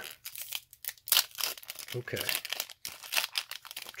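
Foil wrapper of a Pokémon trading card booster pack crinkling and tearing as fingers work it open, in irregular sharp crackles.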